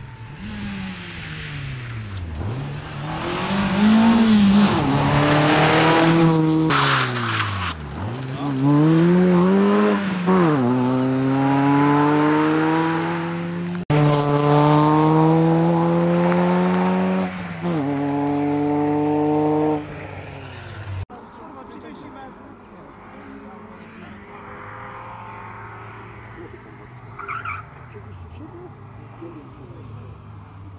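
Renault Clio rally car's engine revving hard under acceleration. For the first ten seconds the pitch climbs and sinks repeatedly as the car slows for corners and pulls away again. From about ten to twenty seconds the revs make long climbs cut off by sharp drops at the gear changes, and after that the engine is fainter and more distant.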